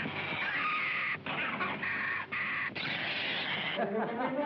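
Jungle animals calling: a run of harsh, raspy squawks in several bursts with short breaks between them. Violin music comes in right at the end.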